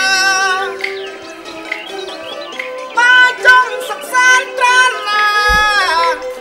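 Khmer Basak opera singing: a voice sings wavering, ornamented phrases over a traditional instrumental accompaniment, holding one long note near the end. A low thump sounds shortly before the end.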